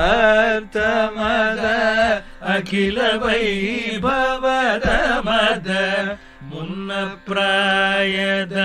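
A solo voice singing a Kannada devotional song in Carnatic style: long held notes bent and shaken by ornaments, with short pauses between phrases.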